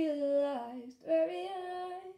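A woman singing unaccompanied: two held, gently gliding phrases with a short breath between them about a second in.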